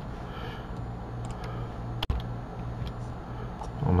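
Steady low background hum with one sharp click about two seconds in and a few fainter ticks.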